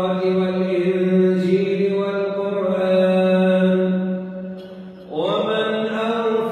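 A man reciting the Quran in the drawn-out melodic tajweed style, holding long, steady notes on a single voice. Near the end the phrase fades into a short breath pause, and a new phrase comes in with a rising note.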